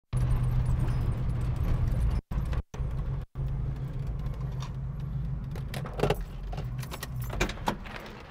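The 304 V8 of a 1975 AMC Hornet running at low speed as the car rolls across the lot and pulls up, a steady low engine note. The sound cuts out completely three times in quick succession. Near the end, as the engine quietens, there are a few sharp clicks and rattles.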